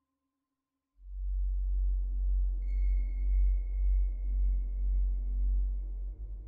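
Mutable Instruments modular synthesizer playing a deep bass drone that comes in suddenly about a second in, with fainter pitched tones above it and a thin high tone joining at about two and a half seconds.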